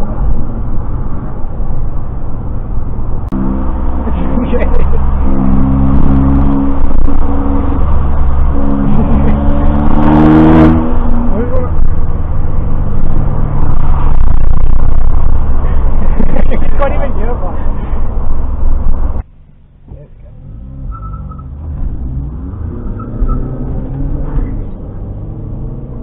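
Loud car-cabin driving noise, engine and road rumble, with music playing over it in held notes that change in steps. The sound drops sharply about five seconds before the end.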